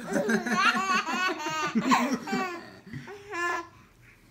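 A baby laughing, a run of short, pulsed laughs that die away about three and a half seconds in.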